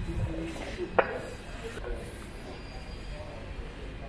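Low background rumble with faint voices of people talking, and one sharp knock about a second in.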